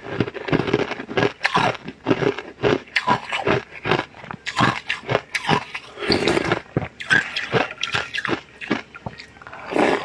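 Close-up eating sounds: slurping from a spoon and chewing of purple black goji berry jelly chunks, a rapid irregular run of wet mouth noises with some crunching.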